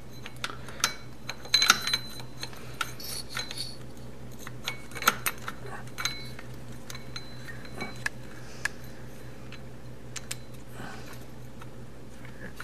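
Light metal clicks and clinks, irregular and scattered, as a Honda CB750's starter reduction gear and its steel shaft are handled and pushed into the engine case. A cluster of clinks comes about two seconds in and a sharper single click about five seconds in.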